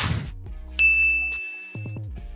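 Logo sound effect: a short rush of noise, then a single bright chime ding about a second in that rings on steadily, over background music.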